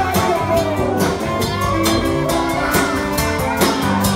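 Live band playing an up-tempo rock number: saxophone over electric guitars and a drum kit keeping a steady beat.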